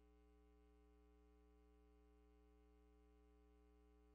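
Near silence, with only a faint steady hum made of several constant tones.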